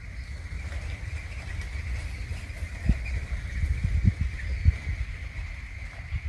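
A steady high-pitched insect drone, with wind rumbling on the microphone and a few low thumps, the loudest about three, four and nearly five seconds in.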